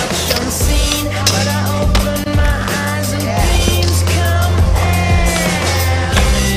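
Skateboard wheels rolling and boards clacking and sliding on the wooden ramps and benches of an indoor skatepark, under loud hip-hop music with a heavy bass line.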